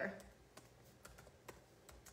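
Faint typing on a computer keyboard: a handful of scattered, irregular keystroke clicks.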